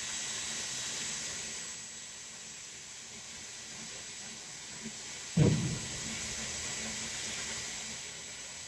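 Hair dryer blowing steadily: a hiss of rushing air with a faint high whine. A short low thump comes about five seconds in.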